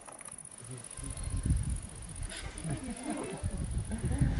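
Outdoor ambience: a low rumble building from about a second in, like wind on the microphone, with faint voices talking in the background.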